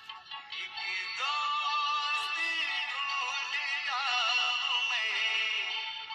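A song playing: a singing voice over music, the melody wavering in pitch with vibrato. The sound is thin, with little bass, and it dips briefly at the very start.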